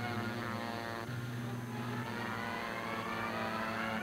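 Propeller aircraft piston engines running at high power, a steady drone with a higher whine rising in pitch over the second half.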